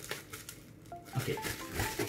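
Bubble wrap crinkling and rustling as it is handled and pulled from a cardboard box, over light background music of short, separate high notes.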